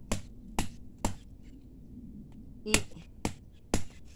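Sharp, hard knocks as carao (Cassia grandis) pods are struck to crack them open and get at the pulp: three strokes about half a second apart, a pause of over a second, then three more at the same pace.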